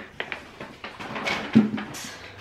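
Hands rummaging in a paper grocery bag: paper and plastic packaging rustling and crinkling, with light clicks and one louder thump about one and a half seconds in.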